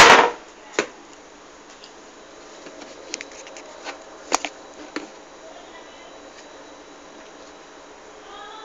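Kitchen handling noise: a loud knock right at the start, a sharp click just under a second later, then scattered light clicks and taps a few seconds in.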